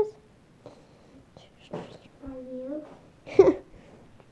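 Quiet children's vocal sounds: breathy whispering, a short held voiced sound, then a brief louder vocal burst near the end.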